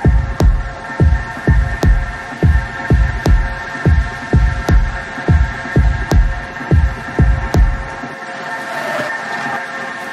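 Techno in a DJ mix: a four-on-the-floor kick drum at about 140 beats a minute under a steady droning chord, with a bright click about every second and a half. The kick drops out about eight seconds in, leaving the drone.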